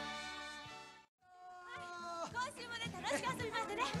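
A children's song with a backing band fades out over the first second and drops to a brief silence. Then high-pitched children's voices call out over music that starts up again and grows louder.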